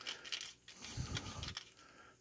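Faint rasping and light clicks of a stainless worm-drive gear clamp's screw being turned with a quarter-inch nut driver, the worm running over the band's slots.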